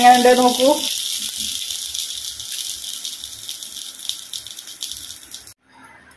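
Thick fish curry sizzling and bubbling in a clay pot on the stove: a steady, fine crackling hiss that slowly fades and cuts off about five and a half seconds in.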